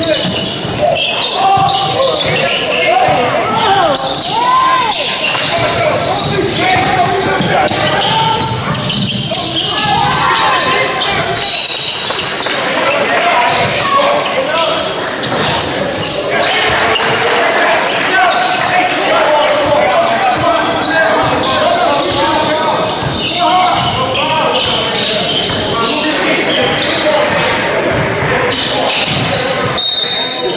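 Live basketball game on a hardwood gym floor: the ball bouncing, shoes squeaking in short bursts, and players' and onlookers' voices, all echoing in a large hall.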